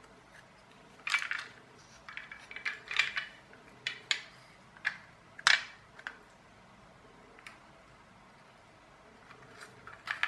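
Metal body shell and chassis of a small toy car clinking and scraping together in the hands as they are fitted back into place: a run of sharp clicks and scrapes starting about a second in, the loudest about halfway through.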